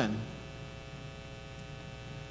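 Steady electrical mains hum, a low buzz with many even overtones. The tail of a man's last spoken word fades out in the first moment.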